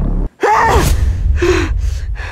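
A woman gasping and breathing hard in a run of short breaths, two of them voiced, over a low rumbling sound effect that drops out for a moment just after the start.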